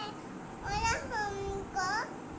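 A young child's high-pitched voice singing, with held notes and pitch glides, including a long falling note about a second in.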